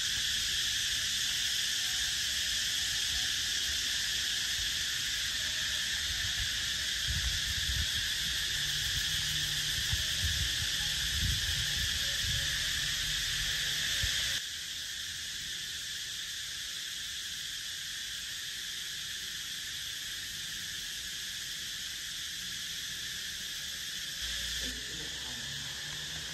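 A steady, high-pitched drone of insects, with an irregular low rumble under it in the first half. The whole sound steps down a little quieter about fourteen seconds in.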